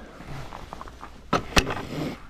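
Footsteps in snow and handling noise beside a motorcycle, with two sharp knocks in quick succession about two-thirds of the way through. The engine is not running.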